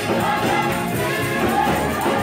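Gospel choir singing with a keyboard and drum kit backing them, many voices together over a steady bass line.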